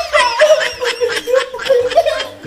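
Laughter in quick, repeated bursts of about four to five a second.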